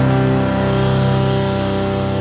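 Amplified electric guitar holding one ringing chord that slowly fades, with no new strokes or drum hits.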